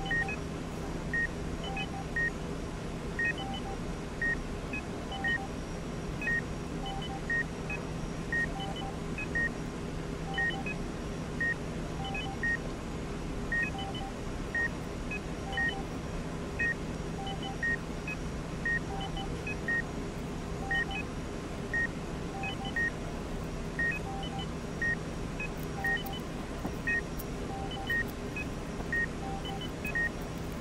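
Patient heart-monitor beeping: a short high beep about once a second, keeping an even beat, over a steady low hum.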